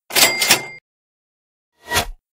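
Cartoon cash-register "ka-ching" sound effect: a short metallic clatter with a bell ringing through it, lasting under a second. A shorter, softer noisy sound follows near the end.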